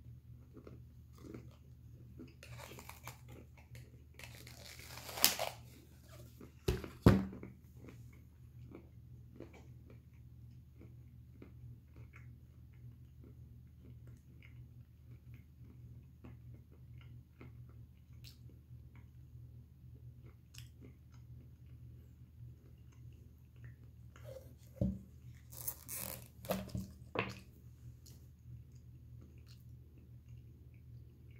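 A man chewing and crunching a mouthful of roasted peanuts, a steady run of small crunches. Two sharp thumps about seven seconds in are the loudest sounds, and there are a few louder noises near the end.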